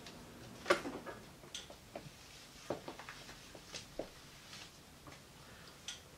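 Faint handling noises: soft fabric rustling with a few light taps and clicks scattered through, as a vest is taken off and laid down.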